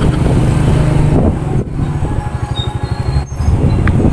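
Motorcycle engine of a tricycle, heard from the sidecar as it rides along. It runs with a steady hum for about the first second, then drops to a lower, pulsing chug as it slows.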